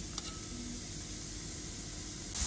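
Chopped onion, celery and garlic sizzling faintly and steadily in oil in a pot, with one light tap near the start.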